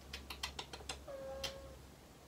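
A young child's brief whimper, a single held high note that dips slightly at the end, after a few quick faint clicks. The child has just hurt his head.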